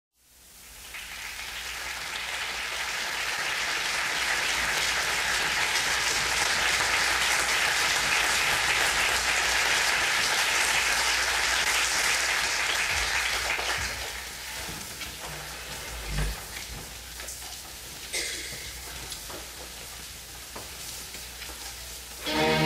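Audience applauding in a concert hall. The applause swells in over the first few seconds, holds, and dies away about two-thirds of the way through, leaving a few scattered claps, a low thump and quiet hall noise.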